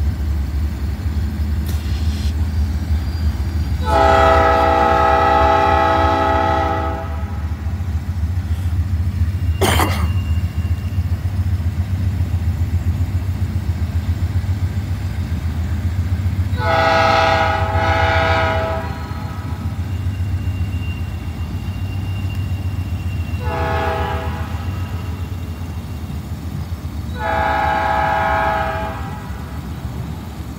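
CSX freight train's diesel locomotives rumbling steadily as the train rolls past, with the lead locomotive's multi-chime air horn sounding four blasts, the third one short. The long, long, short, long pattern is the standard warning signal for a grade crossing.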